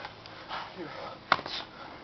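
Faint background voices and breathing, with one sharp smack about two-thirds of the way through.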